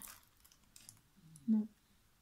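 A few faint, short clicks and crinkles of the plastic cover film on a rolled diamond-painting canvas being handled, with one short spoken word about one and a half seconds in.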